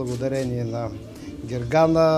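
A man speaking, ending on a long held vowel near the end, the loudest moment.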